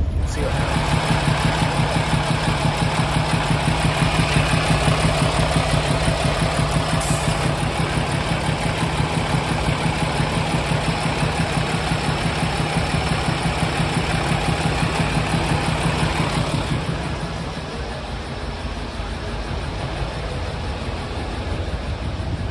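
Freightliner Cascadia semi tractor's diesel engine idling, heard up close at the open hood with a fast, even rumble; it gets a little quieter near the end. The driver says it doesn't sound right.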